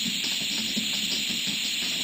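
Steady aerosol spray-paint hiss sound effect from a website's Flash intro, over a music track.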